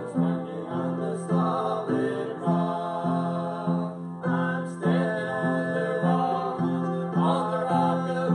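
Southern Gospel song sung by a male vocal trio over instrumental accompaniment with a steady, even bass line.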